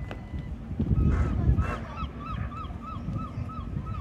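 A bird calling a quick, evenly spaced run of about eight short notes, over a low rumble of wind on the microphone that is loudest in the first half.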